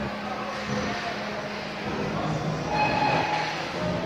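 Steady supermarket ambience: a continuous low hum and hiss with faint voices in the background.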